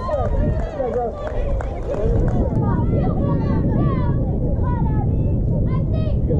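Young girls' voices calling and cheering, high-pitched, the calls coming thicker from about halfway through, over a steady low rumble.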